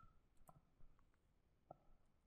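Near silence, broken by three faint short clicks: about half a second in, just under a second in, and near the end.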